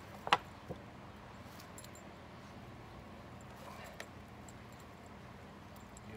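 A sharp click about a third of a second in, the loudest sound here, and a fainter one soon after, then only a steady low outdoor background with one faint tick midway.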